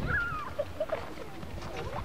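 Children's voices calling and shouting during play. It opens with one high call that falls in pitch, followed by scattered short cries.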